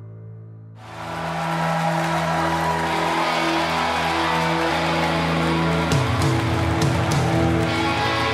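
Soft sustained background music fades out, and about a second in a full rock band comes in loudly and keeps playing: guitars, bass and drums, with a few cymbal crashes near the end.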